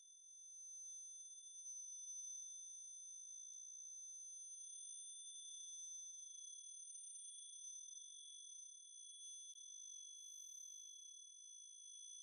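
Quiet electronic acousmatic music: a chord of steady, high sine tones at several stacked pitches, held without change. A faint click sounds about three and a half seconds in and another about six seconds later.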